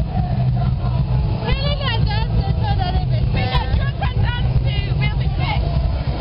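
People talking close by over a steady low rumble.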